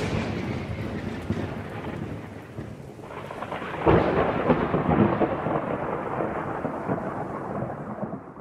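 Thunderstorm sound effect: rain hissing steadily under rolling thunder, the rumble of a thunderclap dying away at first, then a second loud crack of thunder about four seconds in that rumbles on.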